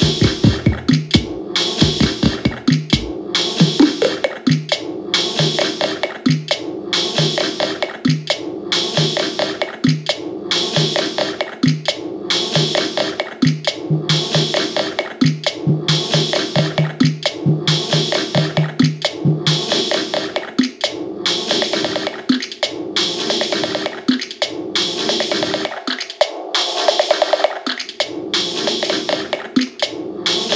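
Korg Volca Sample sampler playing a looped, sequenced pattern of electronic drum and sample sounds, adjusted live. A low repeated note pulses with the beat and stops about two-thirds of the way in, and the low end falls away near the end.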